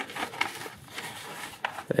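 Cardboard backing of a plastic blister pack being peeled open by its pull tab, with faint crinkling and small scattered clicks from the plastic.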